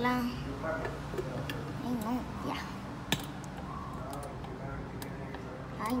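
A few sharp clicks from the buttons of an Oster blender being pressed, with no motor starting: the blender won't switch on.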